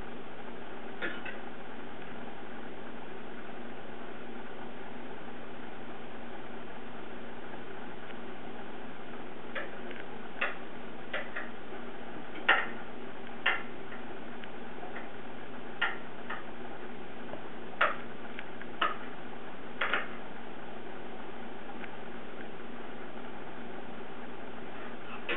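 Steady background hiss with about a dozen irregular, sharp clicks, most of them in the second half.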